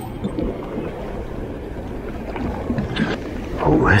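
Steady wind rumbling on the microphone over lake water lapping against a pier.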